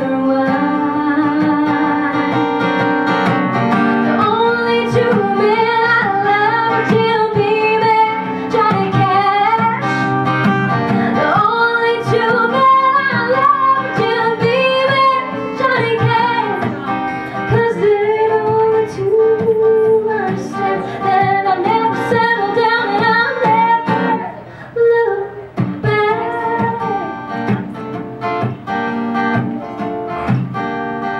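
A female voice sings a melody over strummed acoustic guitar in a country song. Near the end the voice drops out and the guitar strums on alone.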